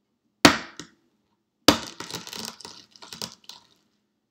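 A hard-boiled egg's shell being cracked: one sharp knock, then about a second later a second knock followed by a couple of seconds of crackling as the shell breaks up.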